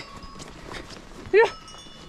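A woman's short, loud herding shout, "yuh!", a little over a second in, driving cows back. Around it, a quiet pasture background with a few faint steady high tones.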